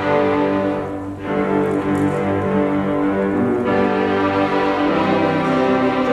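Student string orchestra of violins and cellos playing, bowing long sustained notes, with a brief dip between phrases about a second in.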